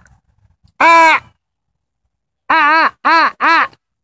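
A man giving a loud, crow-like cawing call, once about a second in and then three times in quick succession near the end: an unusual call used to drive hens into their coop.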